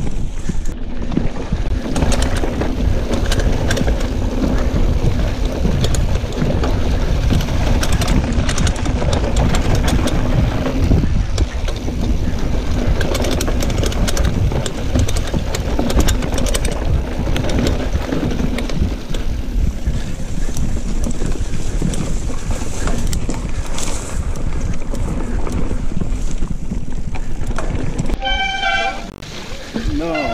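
Mountain bike ridden over rough, grassy singletrack: loud wind rushing over the microphone with tyre rumble and the bike rattling over bumps. Near the end a short run of pitched tones.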